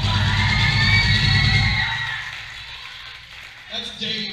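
A live rock band hits loudly with a long shouted vocal over it and the crowd cheering, all dying away after about two seconds; voices pick up again near the end.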